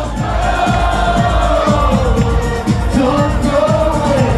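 Live eurodance music played loud through a club sound system, a voice holding long gliding sung notes over a steady pulsing beat, with the crowd faintly audible underneath.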